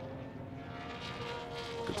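Engines of GT racing cars on circuit, heard trackside as a steady engine note.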